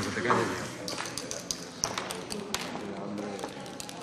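Indistinct voices murmuring in the background, with a few light taps and clicks scattered through.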